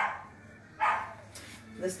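A dog barking twice, short barks about a second apart.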